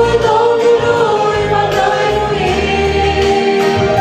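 Two female voices singing a Christian song in duet over instrumental accompaniment with sustained low notes.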